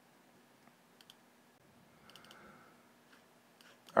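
A few faint computer mouse clicks, two about a second in and a quick cluster about two seconds in, over a faint steady low hum.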